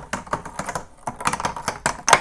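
A Plinko disc tumbling down a wooden pegboard, clattering off the wooden pegs in a rapid, irregular run of clicks.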